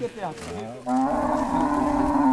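Bororo cow lowing: one long, level moo that starts about a second in and is the loudest sound.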